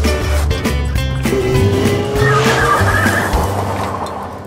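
Cartoon background music with a car sound effect: the car pulls away with a tyre screech about two seconds in, fading out near the end.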